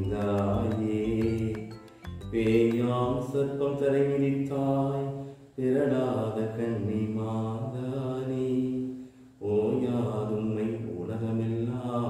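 A man's voice singing a slow devotional chant in four long phrases of held notes, with short breaks for breath between them.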